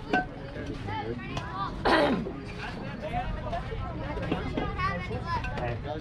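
Overlapping voices of children and adults chattering and calling out, with a sharp knock just after the start and a loud shout that falls in pitch about two seconds in.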